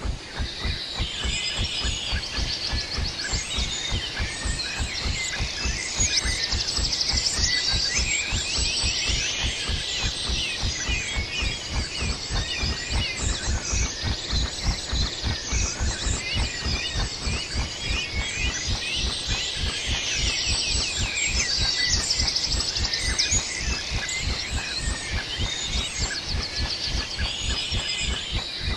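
Birds chirping and singing in repeated bursts over a dense, steady low pulsing rumble.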